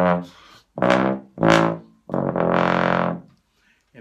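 BBb/F contrabass trombone played with a Denis Wick 3 tuba mouthpiece, working up into its high range: two short notes, then a longer held note that stops about three and a half seconds in.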